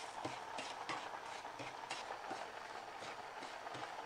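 Wooden spatula stirring and scraping semolina (rava) in a frying pan, making light, irregular taps and scrapes two or three times a second.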